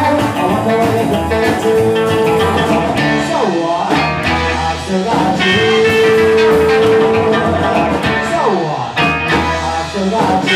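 Live rock and roll band playing: electric guitars, slapped upright double bass and drums, led by the guitar. Two long sliding notes fall in pitch, one a few seconds in and another near the end.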